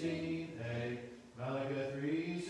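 A group of voices reciting a Bible verse aloud together in unison, in held, chant-like phrases, with a short break about a second and a half in.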